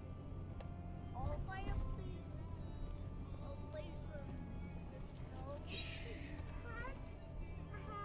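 Steady low drone of a vehicle's engine and tyres, heard from inside the cabin while driving over a snowy trail, with a few brief, faint voice sounds.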